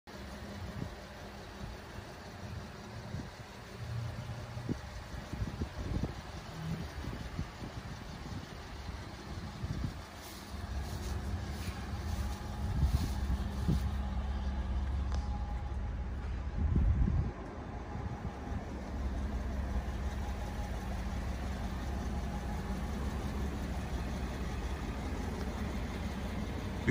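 A vehicle engine idling steadily under a low rumble that gets louder about ten seconds in, with a few short bumps.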